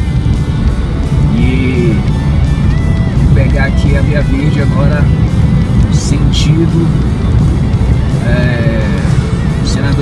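Car interior road and engine noise while driving, with music playing over it, including a voice.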